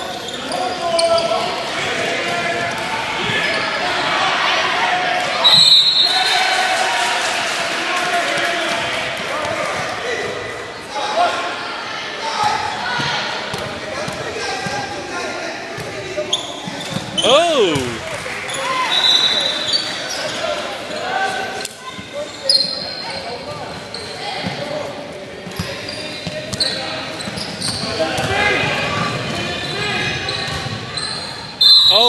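Basketball bouncing on a hardwood gym floor during a game, with the voices of players and spectators carrying through the echoing hall.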